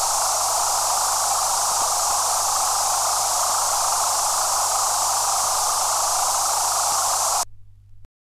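Steady synthesized white-noise hiss with a low hum beneath it, closing out a techno track. It cuts off suddenly near the end, leaving only a faint hum.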